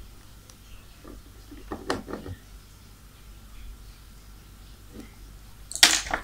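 Mostly quiet room tone with a few brief, soft handling noises about two seconds in, from hands working a plastic charger and a glue applicator at its cable joint. A short, louder noise comes just before the end.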